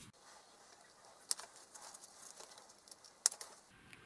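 Two sharp snips of wire cutters cutting through the battery's two lead wires, about two seconds apart, with faint handling noise between.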